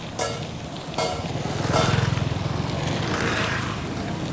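A small motorbike engine running and passing close by, louder around two seconds in, over a steady hiss of wind and tyres on a dirt road. Three short clinks come in the first two seconds.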